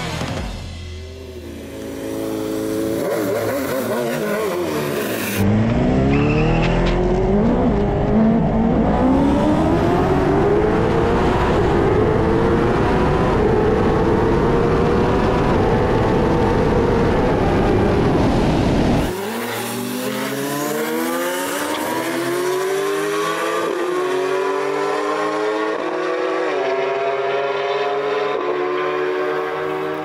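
BMW S1000RR superbike's inline-four launching and pulling hard through the gears on a quarter-mile drag pass, its pitch climbing and dropping at each upshift, with heavy wind rush on the onboard microphone. After an abrupt change about two-thirds in, a racing engine is heard accelerating through several more quick gear changes.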